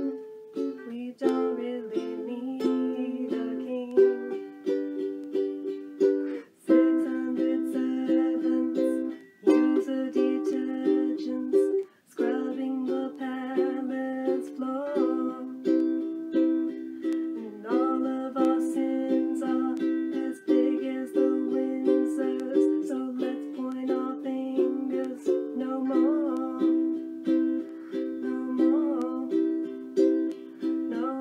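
A ukulele strummed in chords, with a few brief breaks between phrases.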